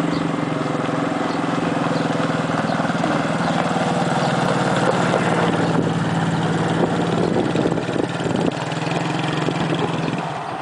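Suzuki ATV engine running at a low, steady speed as the quad drives past close by and then away, a little louder as it passes.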